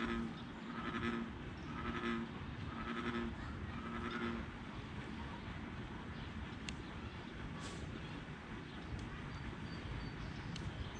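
An animal calling in a regular series, one short low-pitched call about every second, stopping about four and a half seconds in. A few sharp clicks follow later.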